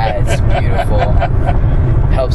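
Steady low road rumble inside a moving car's cabin, with a person's voice talking over it.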